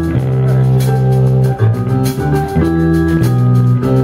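Live rock band playing: electric guitars and keyboard holding sustained chords that change every second or so over a Yamaha drum kit, with steady cymbal strokes.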